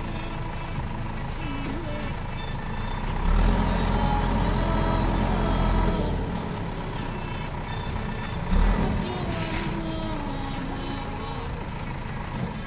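Diesel engine of a JCB 3DX backhoe loader running as it digs. The engine labours louder for about three seconds under load from about three seconds in, then surges again briefly near the end.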